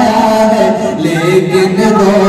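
A man singing a naat unaccompanied into a microphone, a single melodic voice drawing out long held notes.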